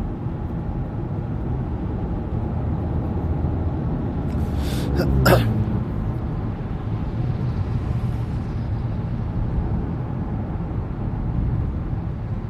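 Steady low rumbling background noise. About five seconds in, one short sharp vocal burst from a person whose pitch falls steeply.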